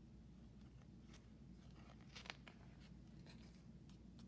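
Near silence: quiet room tone with a few faint paper rustles, a picture book's page being turned, about one and two seconds in.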